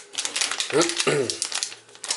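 Plastic bait bag crinkling and rustling in the hands as it is handled and turned over, with a brief voice sound about a second in.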